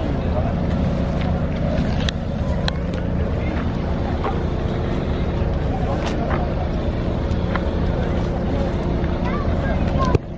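A ferry's diesel engine runs at the dock with a steady low drone. Wind buffets the microphone over it.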